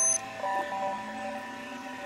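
Pitch-shifted Windows system sound in the "G Major" effect style: held electronic chord tones that shift to a new chord about half a second in, opened by a brief, loud, high chime.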